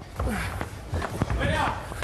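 Several dull thumps of a large ball striking a table and players' feet pounding the floor during a fast head-tennis rally, with brief voices.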